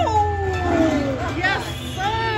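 Slot machine sound effect: a long, howl-like tone that glides steadily down in pitch for just over a second, over the hum of the casino floor.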